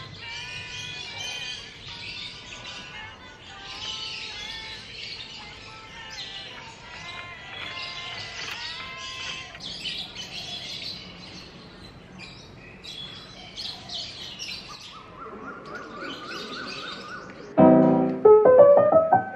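Small birds chirping and singing over soft background music. Louder piano music comes in just before the end.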